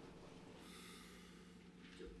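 Near silence: room tone with a faint steady hum, and a faint soft hiss for about a second in the middle.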